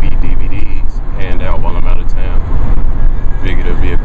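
Steady low rumble of a car in motion, heard from inside the cabin on a phone microphone, with a man's voice speaking at moments over it.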